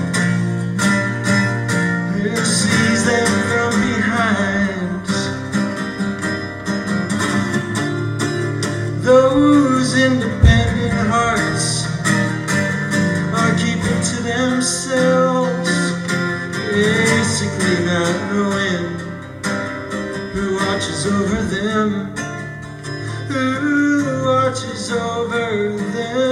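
Live acoustic folk music: plucked acoustic guitar with a wavering melody line above it, in a passage without words. There is a brief low thump about ten seconds in.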